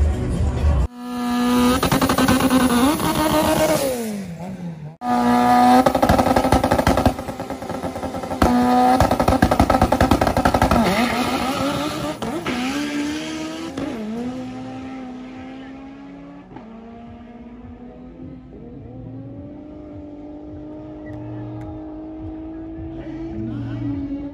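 Turbocharged four-cylinder engine of a Honda Civic drag car. In short cut-together clips it is held at high revs and then drops away. Then it pulls away down the track, the note dipping and climbing again at each gear change as it gets fainter.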